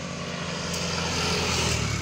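An engine running steadily as it passes, swelling in loudness through the middle and easing off near the end.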